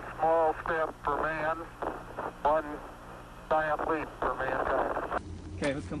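A man's voice heard over a crackly, narrow-band radio link, spoken in short phrases with pauses: archival Apollo 11 moonwalk transmission audio.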